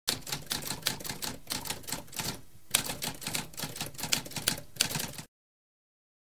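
Typewriter typing, a rapid run of mechanical keystrokes with a short pause about halfway through. It cuts off suddenly a little after five seconds in.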